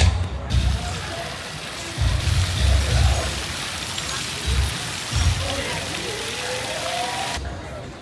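Fountain water splashing steadily into its basin, starting about half a second in and cutting off abruptly near the end, with wind gusting on the microphone and faint voices in the background.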